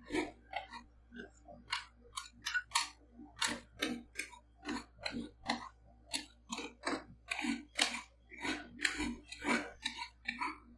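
Steel spatulas scraping and tapping across the frozen steel plate of a rolled-ice-cream cold plate, spreading a thin layer of paprika ice cream mixture, in short repeated strokes about two a second.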